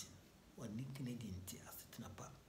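Only speech: a man talking, with no other sound standing out.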